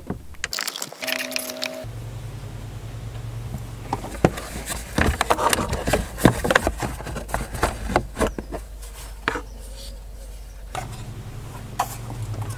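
Hard plastic engine-bay parts being worked loose by hand: a plastic air intake pipe and its bracket are unscrewed and pulled free, giving a run of clicks, knocks and scraping, busiest between about four and nine seconds in.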